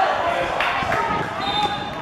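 Voices shouting around a football goalmouth, with two sharp knocks about halfway through.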